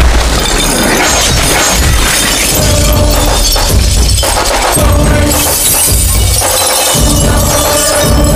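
Loud DJ-style music with a heavy, repeating bass beat, overlaid with a glass-shattering sound effect.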